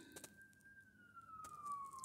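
Faint siren wailing: a single tone that rises slightly and then slowly falls in pitch.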